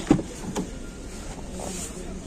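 Chevrolet Captiva's front door handle pulled and the latch releasing with a sharp click as the door opens, then a second, softer click about half a second later.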